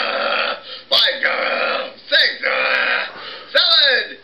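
A man's raspy, gravelly voice making wordless gobbling noises in short bursts about a second apart: a puppet voice wolfing down cookies.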